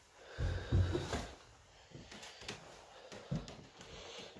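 Footsteps and handling knocks on bare wooden floorboards: a few low thuds about half a second to a second in, then scattered light knocks.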